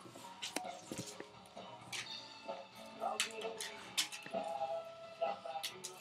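Scattered light clicks and knocks of plastic cassette cases being handled in a cardboard box, over faint music and low voices.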